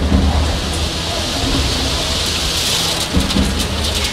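Heavy rain falling, with low rumbles of thunder.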